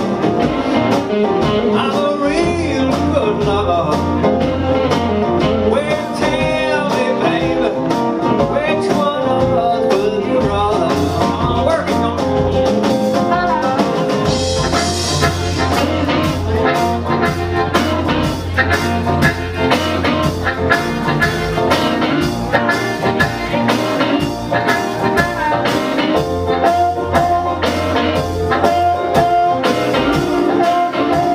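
Live blues band playing an instrumental passage: harmonica leading over electric guitar, upright bass, piano and drums keeping a steady beat.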